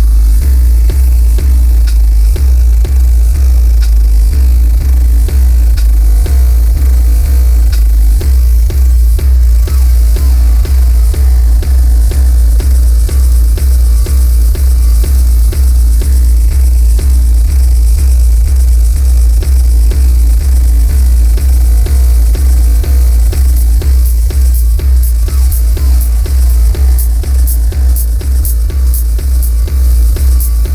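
Live electronic techno music: a heavy, steady bass beat about twice a second under a dense, noisy electronic texture, with sharp high ticks coming in over the last quarter.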